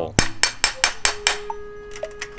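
Metal tools clinking in a metal drain pan as a combination spanner is put to an aluminium cup-type oil filter wrench. There is a quick run of sharp clinks, then a clear metallic ring that holds one steady note for about a second.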